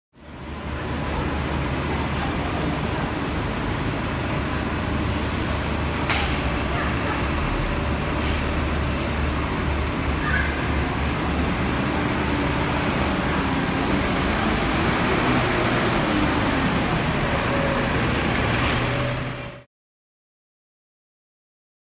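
Double-decker bus's Cummins L9 Euro 6 diesel idling with a steady low rumble under a roofed terminus. A sharp click comes about six seconds in and a short hiss near the end, and the sound cuts off suddenly just before the end.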